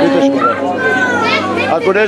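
Children's voices calling and shouting in high, gliding tones over general chatter, with no music playing.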